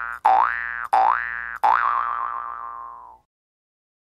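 Cartoon "boing" sound effect repeated several times, each a springy tone rising in pitch, about two-thirds of a second apart; the last one rings on and fades out about three seconds in.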